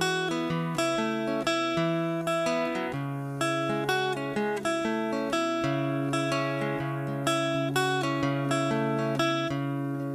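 Steel-string acoustic guitar strummed in a steady rhythm, with the chords changing every couple of seconds.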